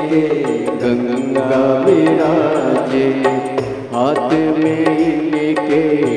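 Devotional bhajan music: a singing voice with gliding melody over sustained instrument tones, kept by a steady beat of sharp strikes about twice a second.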